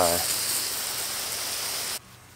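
Water from a garden hose spraying in a steady hiss onto a layer of dry hay on a compost pile.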